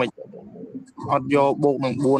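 A man's voice speaking, low-pitched, with a brief quieter pause in the first second.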